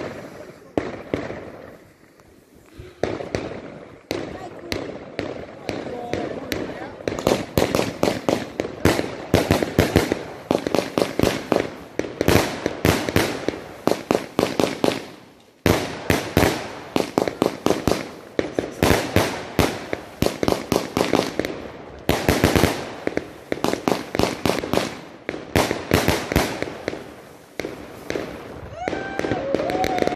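Multi-shot fireworks cake firing: shots launch and burst in quick succession, several sharp cracks a second, starting about three seconds in. There is a brief pause about halfway, then the volleys go on until just before the end.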